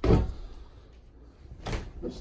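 Hinged double closet door being opened: a knock and thud as it is pulled at the start, and a second knock near the end as it swings.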